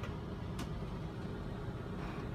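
Steady low room hum with a single sharp click about half a second in, from a computer mouse.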